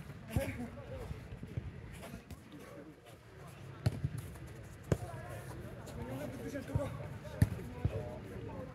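A football being kicked and played on the turf: a handful of sharp thuds spaced a second or more apart, the loudest near the end, with players' voices in the background.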